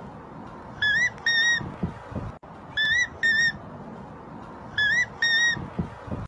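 A high, whistle-like two-note cry repeats four times, about every two seconds. Each pair is two short notes, the first bending slightly upward, and the pairs repeat almost identically.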